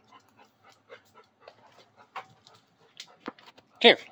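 A dog panting in quick, faint breaths, about four a second, as it comes in from a retrieve. A man calls 'here' near the end.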